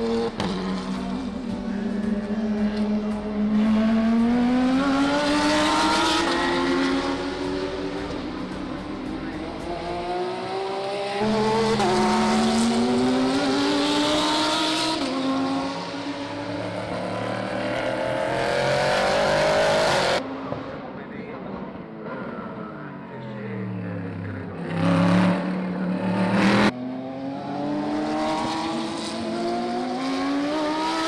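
Race car engines accelerating out of a corner, each note climbing in pitch through the gears, in several passes one after another. About five-sixths of the way through, a car's note falls and then climbs again as it comes by loudly.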